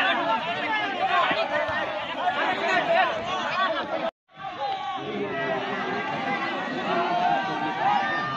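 Many voices chattering and calling over each other, the talk of spectators at a football match. The sound cuts out completely for a moment about halfway through, then the chatter resumes.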